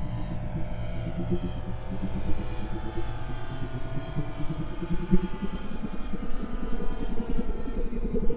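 Ambient electronic music with a low, pulsing drone and faint tones above it.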